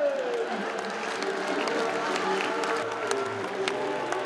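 Theatre audience applauding and murmuring, scattered claps over a steady crowd noise, with faint held musical tones underneath.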